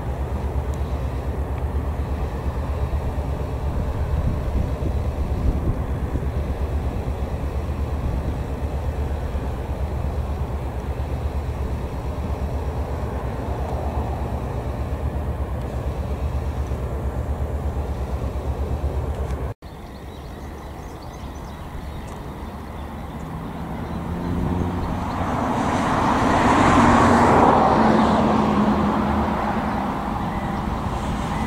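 Steady low rumble of road traffic. After a sudden break about two-thirds of the way in, a road vehicle passes close by, its noise swelling to a loud peak and easing off near the end.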